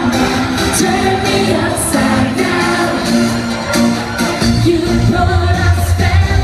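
Live eurodance concert music: a singer over a synth and bass backing, heard from among the audience in a large hall.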